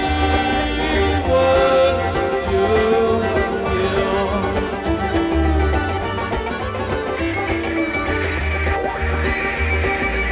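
Live folk string band playing an instrumental passage: a bowed fiddle carries the melody over plucked strings and a steady rhythmic bass pulse.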